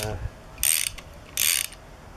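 Socket ratchet clicking in short runs about three-quarters of a second apart as it winds tension onto the centre bolt of a homemade dynastart puller on an engine's crankshaft taper.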